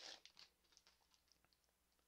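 Near silence, with a few faint ticks and rustles of trading cards and a torn foil booster wrapper being handled in the first half-second.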